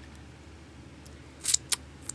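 Handling noise over a low steady hum: two short sharp clicks about a second and a half in.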